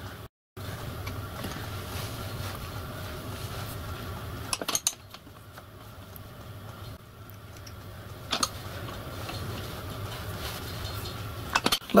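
Small steel valve-gear parts, a vibrating lever with its bush and pin, handled and fitted by hand, giving a few light metallic clicks, the clearest about halfway through and again a few seconds later, over a steady low hum.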